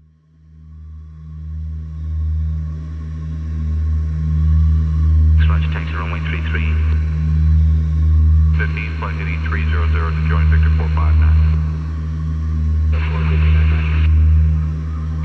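A deep, steady drone fades in, and over it come bursts of tinny, narrow-band radio voice chatter, like pilot and air traffic control transmissions: from about five seconds in, again at about eight and a half seconds, and near the end.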